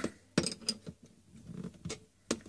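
Aluminium cylinder collet handled on an airgun's air cylinder: three sharp metallic clicks, one with a brief ring.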